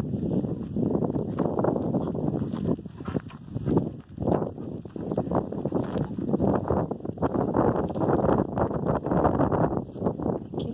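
Footsteps crunching irregularly on a gravelly dirt path as a person and a dog on a leash walk along it.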